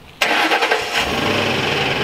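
A vehicle engine starts suddenly and runs on loudly and steadily.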